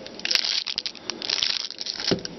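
Clear plastic bag crinkling and crackling irregularly as the handheld two-way radio inside it is handled and turned over.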